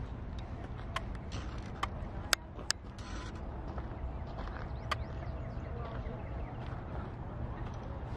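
Outdoor ambience while walking on a gravel path: a steady low rumble with scattered sharp clicks and footsteps, faint bird chirps and distant voices.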